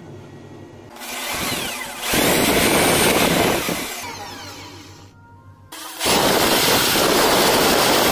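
Electric drill running a polishing wheel against a small metal piece: it spins up about a second in, runs loud, winds down with falling pitch past the middle, then starts again suddenly near the end at full speed.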